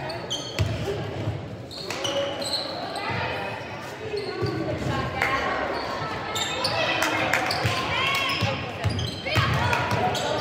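A basketball bouncing on a hardwood gym floor during play, repeated sharp bounces in the echo of a large gym, with indistinct shouting from players and spectators.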